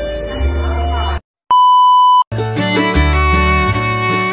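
Background music cuts off about a second in, and after a short silence a single loud, steady high-pitched beep sounds for under a second. After another short gap, upbeat electronic dance music with a steady beat starts.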